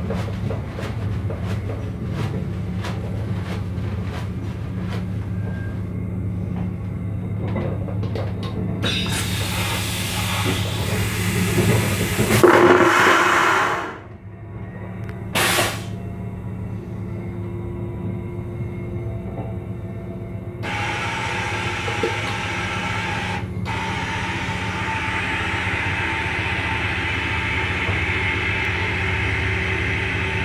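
Train vacuum toilet flushing: a loud rushing suck builds for about five seconds and cuts off suddenly, then a brief hiss, over the steady low hum of the moving train. The flush does not clear all the toilet paper from the bowl.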